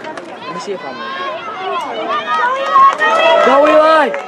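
Spectators shouting and cheering during a play, many voices overlapping and growing louder toward the end.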